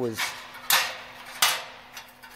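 Freshly plasma-cut 10-gauge steel strips, wire-tray splices, clinking against each other and the steel slats of the cutting table as they are handled: two sharp metallic clinks about 0.7 seconds apart.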